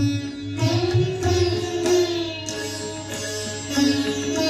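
An ensemble of sitars playing an Indian classical piece together, plucked notes with slides between pitches.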